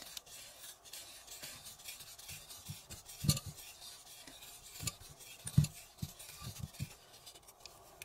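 Cotton crochet thread being wound around a plastic tassel maker: faint rubbing and handling noise, with a few light knocks, the clearest about three seconds and five and a half seconds in.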